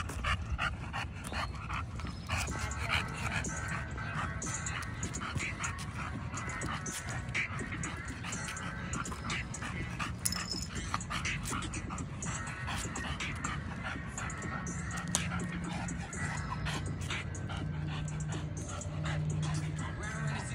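An exotic bully dog panting, close to the microphone, over rap music with a steady bass line.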